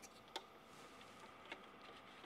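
A few faint, sharp clicks, the clearest about a third of a second in and another about a second and a half in, from the plastic TQFP-100 socket adapter being closed and locked down over a chip on the programmer. A faint steady hum lies underneath.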